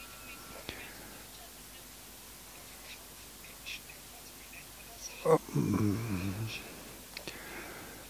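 Faint speech from a YouTube interview playing through computer speakers: one short phrase about five seconds in, over a quiet room background with a couple of faint clicks.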